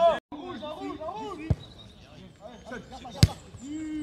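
A football kicked on a grass pitch: two sharp thuds, the louder one about three seconds in, amid players' shouts.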